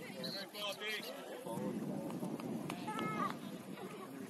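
Voices on a soccer field: high-pitched shouts and calls, the first in the opening second and another about three seconds in, over a steady background murmur of talk.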